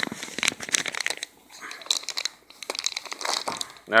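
Plastic packaging bag crinkling and crackling in irregular bursts as it is pulled open by hand.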